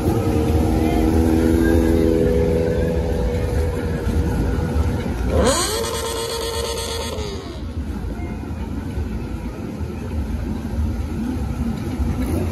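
Motorcycle engines running over a crowd's noise. About five seconds in, one engine revs sharply up, holds high for under two seconds, then drops back.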